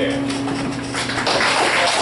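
The last chord of an acoustic guitar ringing out and fading, then a small audience breaking into applause about a second in.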